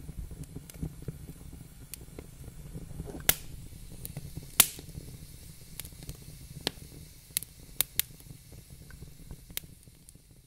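Scattered sharp pops and crackles over a low steady rumble, the loudest two about three and four and a half seconds in, the whole fading away near the end.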